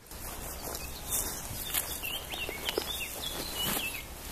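Outdoor field ambience: small birds giving short, falling chirps from about two seconds in, over rustling and light footsteps in long grass, with a low wind rumble on the microphone.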